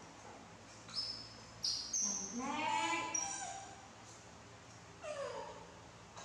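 Baby macaques squeaking and whining for food: short high squeaks about one to two seconds in, a longer wavering call around two to three seconds in, and a falling whine about five seconds in.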